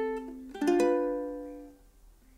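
Concert ukulele with Nylgut strings, fingerpicked slowly. A note ringing on at the start, then two notes plucked in quick succession about half a second in, ringing out and dying away to near silence by the end.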